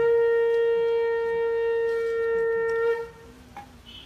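Conch shell (shankha) blown in one steady, loud note lasting about three seconds, starting and stopping sharply.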